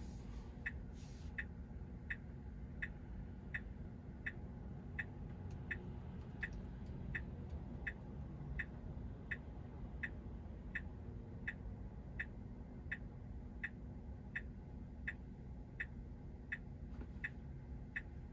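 Tesla's turn-signal indicator ticking steadily inside the cabin, about three clicks every two seconds, while the car sits stopped at a red light waiting to turn left; a low, steady cabin rumble underneath.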